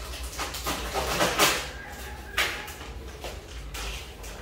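Irregular bursts of rustling and handling noise, the loudest about a second and a half in, from packaging and utensils being handled at a stand mixer.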